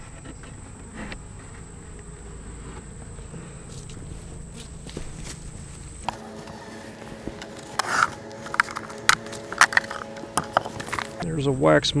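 Honey bees buzzing, with a steady hum that comes in about halfway, as a bee flies close. Over the second half come a run of sharp knocks and clicks from the wooden hive boxes and frames being handled.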